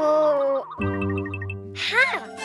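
Cartoon sound effects and music: a wobbly, slightly falling 'ohh' from a dazed baby character, then a held chord with a run of small twinkling chime notes, and a quick rising glide near the end.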